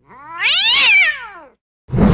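A cat's long meow that rises and then falls in pitch, followed near the end by a short burst of noise with a heavy low end.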